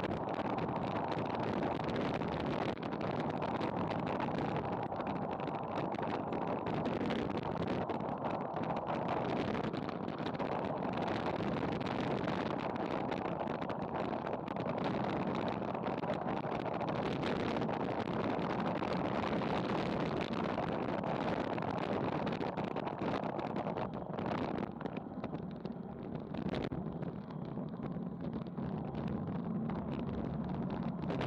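Steady wind rush and buffeting on a bike-mounted Garmin VIRB action camera's microphone, with road-bike tyre noise on asphalt, during a fast descent. The noise eases somewhat near the end as the bike slows.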